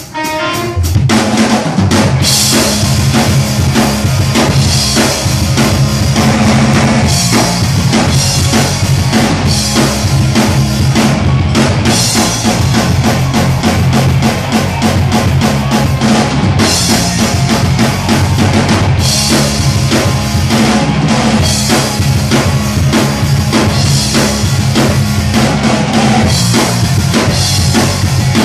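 Live punk rock band playing loud and full: electric guitars, bass guitar and a drum kit with bass drum, snare and cymbals, the song starting about half a second in.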